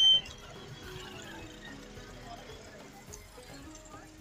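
Background music over street murmur, opening with a brief, loud, high-pitched beep.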